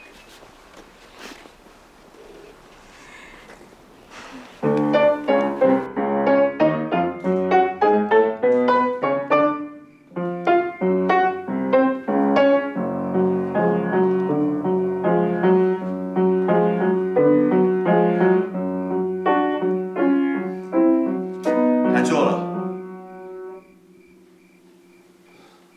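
Piano playing a classical piece, starting about four and a half seconds in after faint room sound, with a short break about ten seconds in and a louder, harsher moment near the end before it stops. It is played without a metronome.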